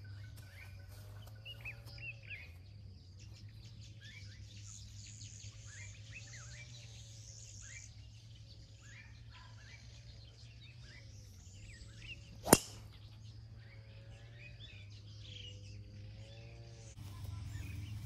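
Birds chirping and calling over a steady low background, broken about two-thirds of the way through by a single sharp crack of a golf driver striking the ball off the tee.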